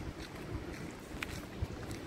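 Wind rumbling unevenly on a handheld phone's microphone.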